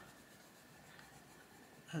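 Faint scratching of a Faber-Castell Polychromos coloured pencil shading on paper.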